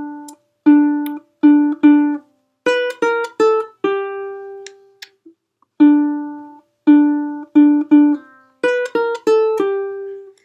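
Single notes picked on a ukulele, playing a short riff twice: four repeated low notes, then three quick notes stepping down in pitch and a final lower note left to ring.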